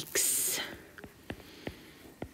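A spoken word trails off, then a stylus taps and clicks lightly on a drawing tablet while handwriting: about five short, sharp ticks from about a second in.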